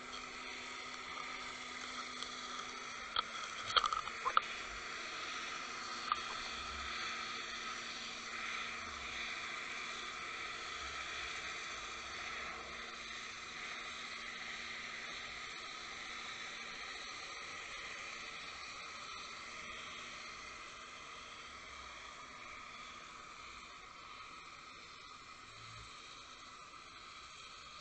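Steady underwater hiss of water moving past a camera dragged with a bucktail fishing rig over sandy bottom, with a few sharp clicks about three to four seconds in and once more near six seconds. The hiss slowly fades over the second half.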